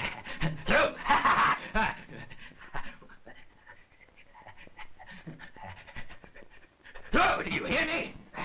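A man's heavy, breathy panting and grunting, loudest about a second in and again near the end, with quieter rustling and breath between.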